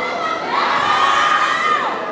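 Spectators shouting encouragement during a weightlifter's clean and jerk: one long, high-pitched held shout starting about half a second in and dropping away near the end, over a hall crowd's background noise.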